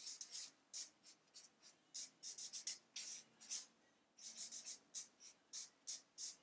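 Felt-tip marker writing on flip-chart paper: short, sharp strokes in quick irregular clusters with brief pauses between letters.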